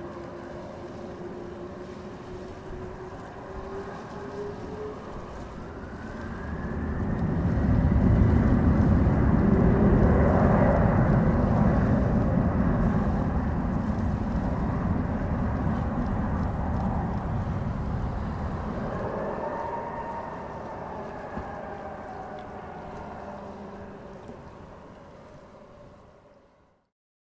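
Airbus A310-304's two General Electric CF6-80C2 turbofans spooling up to takeoff power with a rising whine, then a loud deep rumble as the jet rolls past on its takeoff run, fading slowly as it lifts off and climbs away.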